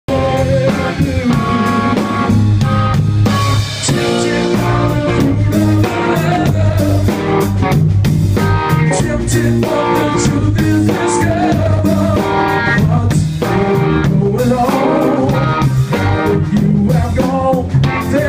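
Live band music led by a hollow-body electric guitar playing notes and phrases over a steady beat.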